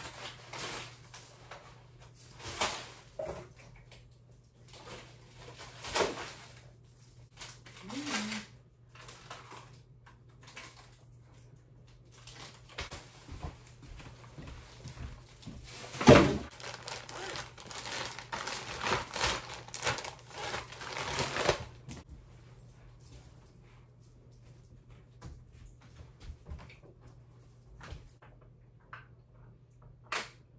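White plastic bag rustling and crinkling as it is handled and items are dropped into it, in irregular bursts with knocks. The loudest is a sharp knock about sixteen seconds in, followed by several seconds of steady rustling.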